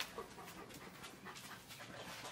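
A dog panting faintly, in a steady run of short breaths, with a light click right at the start.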